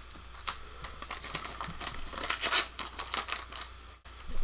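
Wax-paper wrapper of a 1986 Donruss baseball card pack crinkling and tearing as it is opened by hand, a run of dense crackles that is busiest in the middle.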